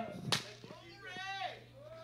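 A quiet pause with a single sharp crack about a third of a second in, followed by faint voices.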